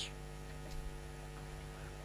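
Faint, steady electrical mains hum with a ladder of overtones. A short hiss comes at the very start.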